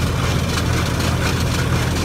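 Engines and grain-handling machinery running steadily, a low, even drone.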